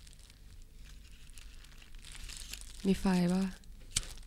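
A woman's voice asking in Thai "got a light?" about three seconds in, over a faint low hum and light rustling, with one sharp click at the very end.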